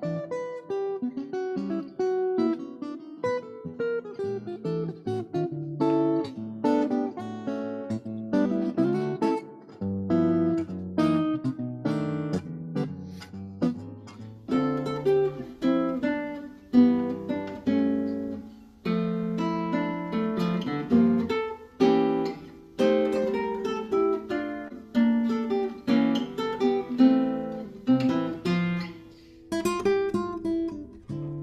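Solo acoustic guitar playing, fingerpicked chords mixed with single-note melody lines.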